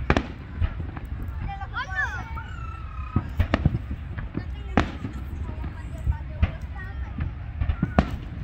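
Aerial fireworks shells bursting: a string of sharp bangs at uneven intervals, the loudest about five seconds in.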